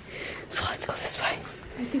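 A person whispering for about half a second, followed near the end by a few softly spoken words.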